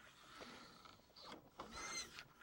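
Faint swishing of a solvent-wetted bore brush on a cleaning rod being pushed slowly through a rifle barrel, with a faint squeak near the end.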